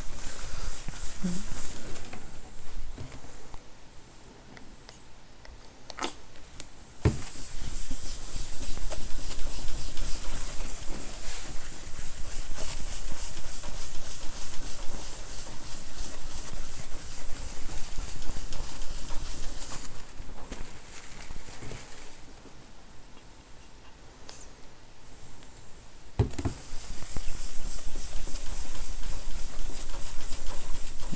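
Paper towel rubbed back and forth over a MacBook's glass screen, a rhythmic scrubbing that works toilet bowl cleaner in to strip the anti-glare coating. The scrubbing eases off twice, and two short knocks come about six and seven seconds in.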